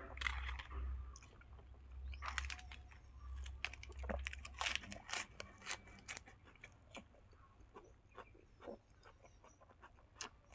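A fresh lettuce leaf being torn by hand, then close-up chewing and crunching of a mouthful of lettuce with braised pork. Many sharp crunches come thick from about two seconds in and thin out over the last few seconds.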